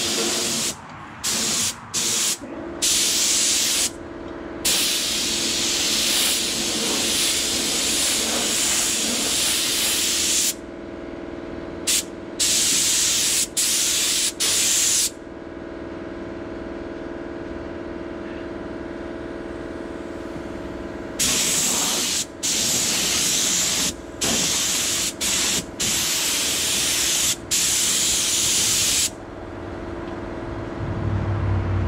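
Paint being sprayed in repeated bursts of hiss: several short ones, one long pass of about six seconds, a lull of several seconds, then more short bursts. A steady hum runs underneath.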